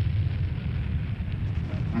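Sound-effect rumble of a spacecraft capsule in fiery atmospheric entry: a steady deep rumble with a fainter hiss above it.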